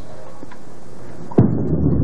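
Bowling ball dropped onto a wooden lane on release: a single sharp thud a little past halfway, followed by a steady low rumble as it rolls away.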